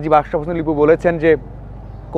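A man speaking Bengali to the camera, breaking off about a second and a half in. A faint steady low hum of outdoor background runs underneath.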